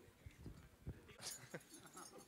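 Near silence: faint background voices and a few soft clicks.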